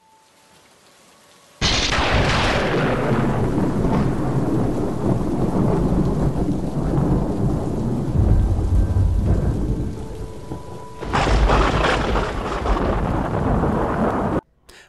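Thunderstorm sound effect: rain falling steadily, opened by a sudden thunderclap about a second and a half in, with deep rolling rumble later and a second loud thunderclap near the end.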